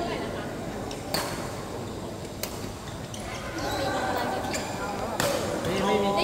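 Badminton rackets striking shuttlecocks in rallies on nearby courts: a few sharp cracks a second or more apart, under people chatting in a large hall.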